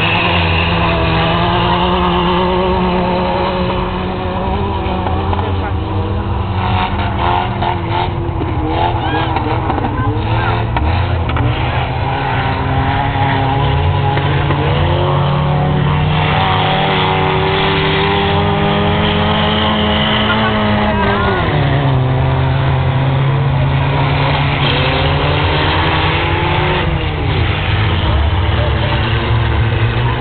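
Several race cars' engines running and revving at once as they lap a grass-and-dirt track, pitch rising and falling through acceleration and gear changes. One engine drops sharply in pitch about two-thirds of the way through.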